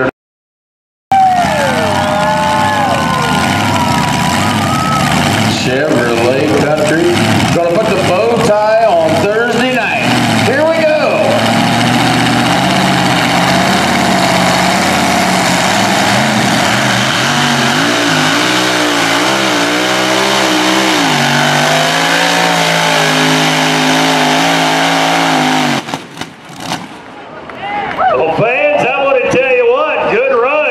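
Supercharged engine of a two-wheel-drive pulling truck running at high revs under load as it drags the weight-transfer sled. Its pitch climbs about two-thirds of the way through, holds, then drops away suddenly near the end. A man's voice, likely the PA announcer, is heard over it early on.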